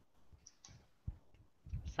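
Quiet call audio with a few faint, short clicks, the most distinct about a second in.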